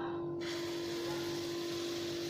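Hot oil in a nonstick frying pan sizzling as beaten egg batter is poured in; the sizzle starts suddenly about half a second in and then holds steady, over a steady low hum.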